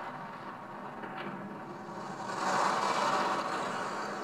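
Film trailer soundtrack heard through room speakers: a rushing swell that builds about two seconds in, peaks a second later and eases off toward the end.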